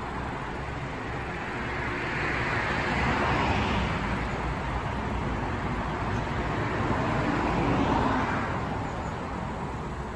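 Road traffic: two vehicles pass one after the other, one swelling and fading about two to four seconds in, the next about seven to eight seconds in, over a steady low rumble.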